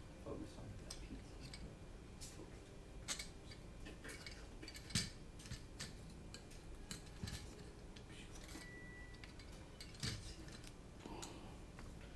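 Faint, scattered clicks and light taps of a hex screwdriver and hands working on a small carbon-fibre drone frame, turning out its screws.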